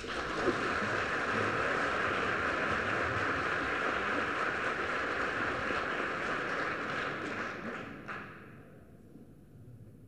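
Audience applauding, breaking out suddenly and holding steady for about eight seconds, then dying away.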